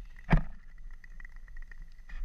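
A single loud, sharp crack of natural ice a third of a second in, over a low rumble and faint scattered ticking from the frozen surface.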